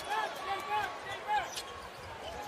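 Arena court sound during a late-game inbound set-up: a string of short, high-pitched sneaker squeaks on the hardwood as players cut and jostle, over low crowd noise.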